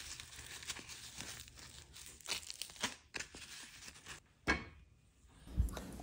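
Green husks being torn off an ear of fresh corn by hand: faint crinkly rustling with a series of short rips.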